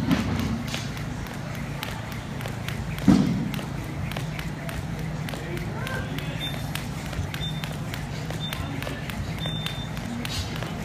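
Jump rope slapping the rubber gym floor in a quick, even run of clicks, about three to four a second, over a steady low hum. A heavy thump about three seconds in is the loudest sound.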